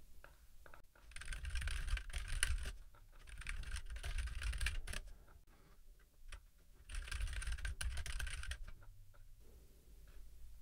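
Typing on a computer keyboard: three short bursts of rapid keystrokes, with a few separate clicks in the pauses between them.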